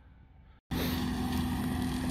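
Tractor with a front-mounted flail topper and a side-arm flail hedge trimmer running. It cuts in suddenly about half a second in, after near quiet, as a steady machine drone with a constant hum.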